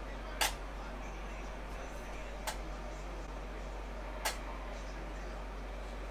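Three short, sharp metallic clicks, a couple of seconds apart, the first the loudest, as small lead jigs are hung on stainless steel wires strung across a metal baking pan. A steady low hum runs underneath.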